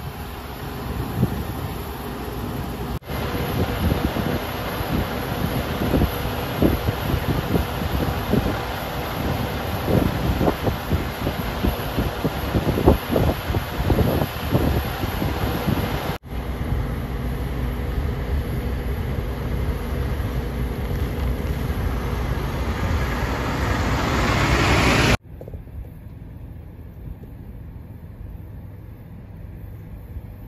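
Gusty wind buffeting the microphone over vehicle engine noise. Toward the end the sound swells louder and higher for a few seconds, then cuts off abruptly, leaving a quieter steady outdoor background.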